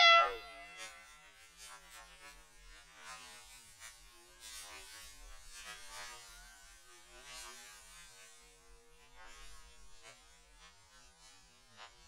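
A child's brief, loud excited yell at the very start, falling in pitch, as a Coke and Mentos eruption goes up. After it only faint scattered noises are left.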